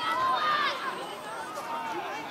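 Several voices of junior rugby players and spectators calling out and chattering at once, overlapping so that no single speaker stands out.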